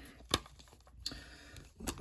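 Two sharp clicks of hard plastic trading-card holders knocking together as a stack is handled, about a second and a half apart.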